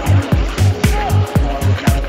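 Music with a heavy, steady beat: deep bass thumps about four times a second.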